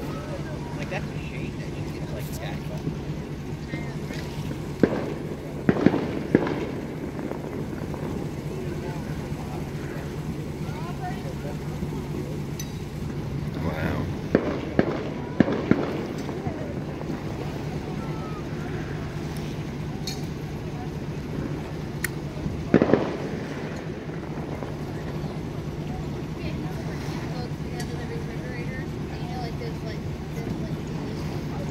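Fireworks going off in three clusters of sharp bangs, about four a third of the way in, about four around the middle, and one or two near three quarters, over a steady low hum and faint voices.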